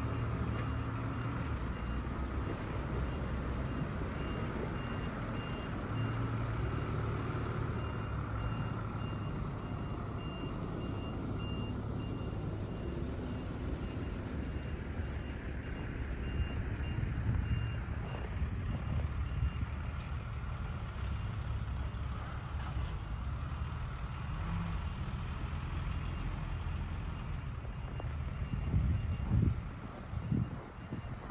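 A work vehicle's reversing alarm beeping steadily at about two beeps a second, over the low rumble of a diesel engine from snow-clearing machinery.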